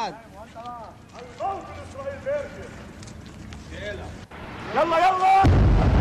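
Faint voices, then a shout, then, about five and a half seconds in, a sudden loud deep rumble from an airstrike hitting a residential building.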